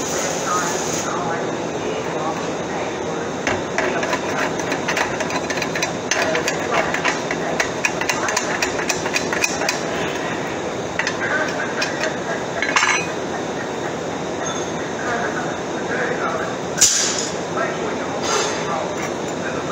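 Light clinks and taps of short square steel tubes being handled and set down on a steel welding table, in a quick irregular run, over a steady noisy shop background. A high hiss cuts off about a second in, and a sharper metal knock comes near the end.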